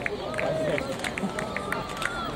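Quick footfalls of several runners' spikes striking the synthetic track as they come down the home straight, about four sharp ticks a second, with spectators' voices calling in the background.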